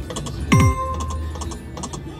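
Video slot machine sound effects as the reels stop spinning: a run of quick reel-stop clicks one after another. About half a second in there is a louder electronic sound, a quickly falling tone over a held high beep.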